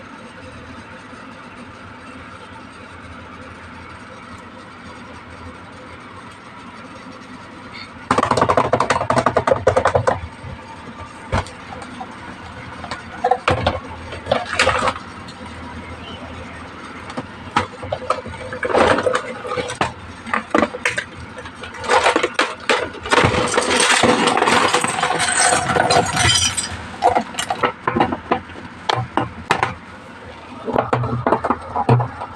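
Plastic toy case and its packaging being handled: a faint steady background at first, then from about eight seconds in loud, irregular rustling and crinkling with many sharp clicks and knocks of plastic, busiest near the end.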